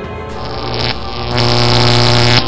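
Electric zap sound effect for a lightning bolt fired from the hand: a buzz that starts about half a second in and grows much louder near the end, over background music.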